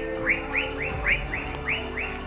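A small animal calling at night in a steady series of short rising chirps, about four to five a second, with a steady low hum underneath.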